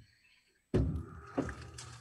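A sudden thump about three quarters of a second in, then a low rumble with a second knock, from a person shifting about close to the microphone in a vehicle cab.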